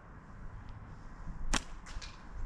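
Homemade catapult (slingshot) firing a ball bearing: two sharp swishing snaps about a third of a second apart, about one and a half seconds in, as the rubber band is let go.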